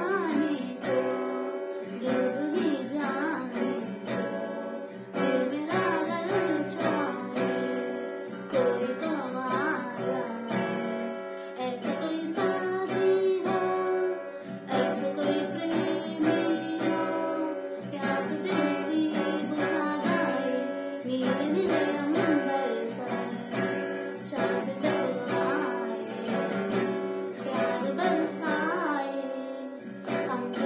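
A woman singing a Hindi film song while strumming a steel-string acoustic guitar in a steady rhythm.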